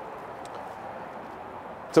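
Steady outdoor background noise, an even hiss with no distinct events, between stretches of talk.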